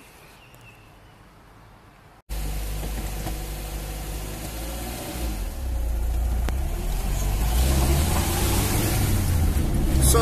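After a quiet first two seconds, a sudden cut to a Lada Riva's four-cylinder petrol engine and road noise heard from inside the cabin while driving. The sound grows steadily louder as the car gets under way.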